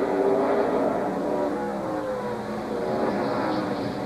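NASCAR Winston Cup stock cars' V8 engines running at race speed in a pack on a road course. Several engine notes overlap, their pitches slowly rising and falling.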